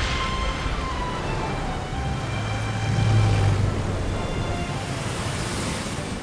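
Heavy rain and highway traffic: cars driving through the downpour, with a low vehicle rumble that swells and fades about halfway through.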